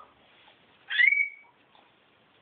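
A baby's short, high-pitched squeal about a second in, settling on one held note for about half a second.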